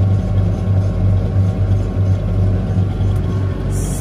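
Tractor engine running under load with a steady, rhythmic low pulsing. The pulsing stops shortly before the end and is followed by a brief hiss.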